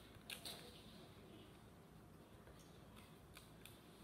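Near silence: room tone, with two faint sharp clicks about half a second in and two fainter ticks near the end.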